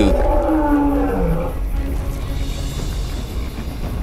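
Cartoon monster roar sound effect, a drawn-out cry lasting about two seconds and then fading, over background music with a steady deep rumble underneath.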